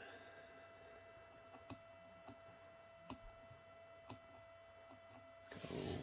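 Near silence with a few soft clicks, spaced about a second apart, of push buttons being pressed on a tube clock's front panel while its alarm is set. A short burst of noise comes near the end.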